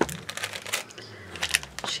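Plastic packaging crinkling and rustling as small craft items in plastic wrappers are handled, with a sharp click at the start and a few more near the end.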